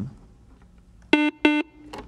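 Quiz-show buzz-in buzzer sounding, two short electronic tones a little over a second in, each about a quarter second long and close together: a contestant has buzzed in to answer.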